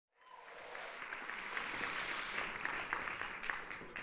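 Audience applauding, fading in from silence just after the start and dying down near the end.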